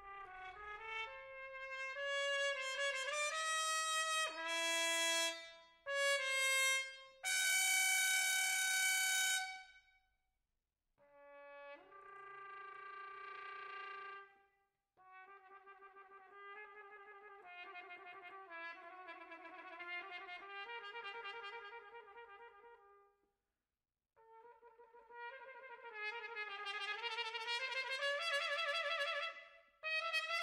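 A cornet playing an unaccompanied melodic line: a loud phrase that ends on a long held note, a short break, then a quieter passage of quick repeated notes, and a final phrase that climbs and grows louder.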